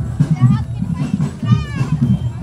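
Children's voices chattering and calling out, over the repeated beat of a marching drum band.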